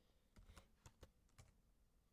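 Faint keystrokes on a computer keyboard: several separate key clicks as a short command is typed and entered in a terminal.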